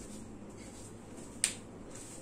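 A single sharp click about one and a half seconds in, over faint steady room hiss and hum.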